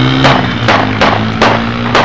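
Semi-automatic pistol fired about five times, roughly two shots a second, over background music holding a steady low chord.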